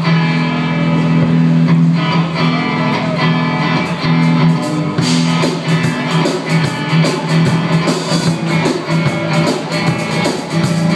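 Live band playing the instrumental intro of a guitar song: strummed guitars over a steady, repeating low bass note, with no singing yet.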